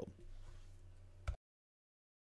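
Faint room tone with a steady low hum from the narration recording, ending in a small click about one and a half seconds in, then dead silence.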